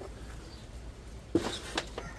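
Wooden beehive box being shifted by hand, giving one short knock about one and a half seconds in and a lighter click just after, over a faint background.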